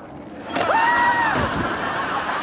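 A comic bowling-strike crash as a row of people dressed as bowling pins is knocked down. A long, steady high yell starts about half a second in, over a rising, rushing rumble and clatter that carries on after the yell stops. An audience may be cheering under it.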